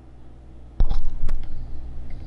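Handling noise: a knock about a second in, followed by low rumbling and a couple of light clicks as the phone is moved about in the hands.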